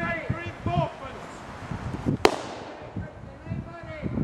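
A single musket shot about two seconds in, a sharp crack with a short echo trailing off through the woods.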